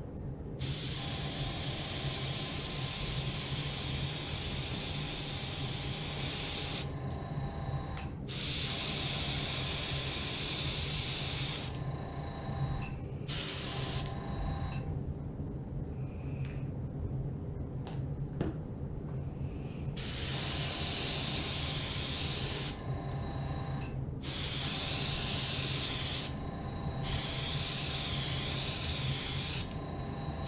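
Iwata Eclipse dual-action airbrush spraying paint in a series of hissing bursts, each a few seconds long, with short pauses between them as the trigger is released. A steady low hum runs underneath.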